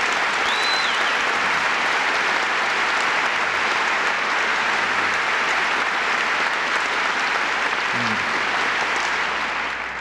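Audience applauding steadily, tapering off near the end. A brief high whistle cuts through about half a second in.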